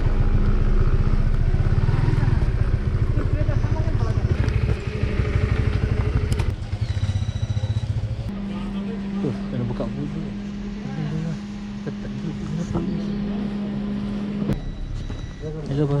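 Honda motorcycle engine running as the bike rolls slowly up and stops. About six seconds in it drops away, leaving a quieter steady hum.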